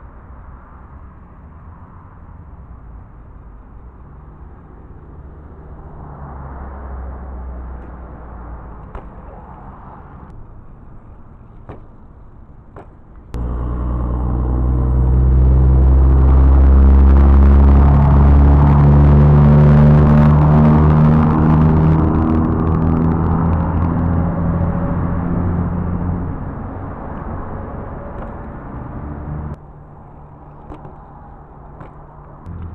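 BMX tyres rolling on concrete close to the microphone: a low rumble at first, then a sudden much louder humming rumble just over a third of the way in. It peaks around the middle and slowly falls in pitch as it fades, cutting off shortly before the end.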